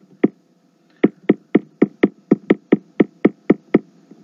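Rapid clicking at a computer: two clicks, a short pause, then a steady run of about a dozen clicks at roughly four a second.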